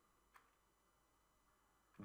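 Near silence: room tone, with one faint click about a third of a second in.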